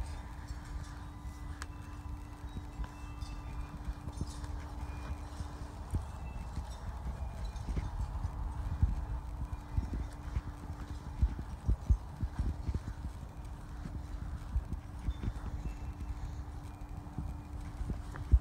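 Microfiber towel wiping car side-window glass to spread and dry glass cleaner: rubbing with irregular knocks and bumps, thicker in the second half. A steady low hum runs under the first six seconds.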